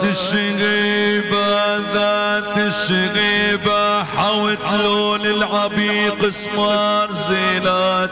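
Middle Eastern music on an electronic keyboard: a melodic line with sliding pitch bends over a steady held drone note.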